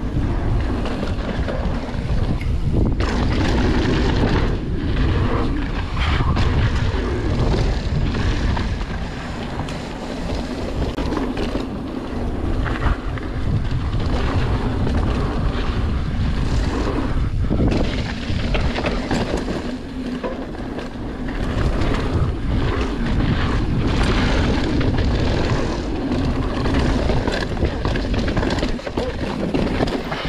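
Mountain bike riding fast down a dirt trail: steady rushing wind on the microphone and tyre roar, broken by frequent short clatters and knocks as the bike runs over bumps.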